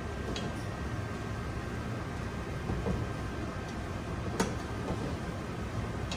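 A utensil folding batter in a stainless steel mixing bowl, with a few light knocks against the bowl, the sharpest about four and a half seconds in, over a steady kitchen hum.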